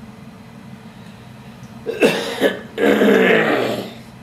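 A man coughs twice in quick succession about two seconds in, then clears his throat for about a second.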